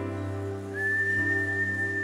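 Soft live worship music between sung lines: steady sustained chords, joined a little under a second in by a single high, pure whistle-like note that slides up and is then held.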